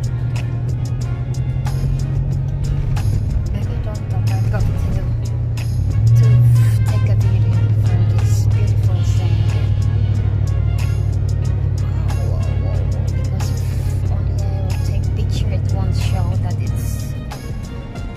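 An off-road vehicle's engine running under load while driving over sand dunes. Its low note steps up about four and six seconds in and eases off near the end. Music plays over it.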